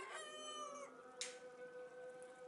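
A rooster crowing faintly, the call ending with a drop in pitch a little under a second in. After it comes a brief hiss, over a faint steady hum.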